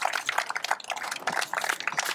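A small group applauding, with separate hand claps close together in an irregular patter.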